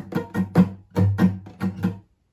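Steel-string acoustic guitar with a capo, strummed in a quick down, down, up, up, down, up pattern: about nine strums, the chord ringing between strokes, stopping abruptly at the end.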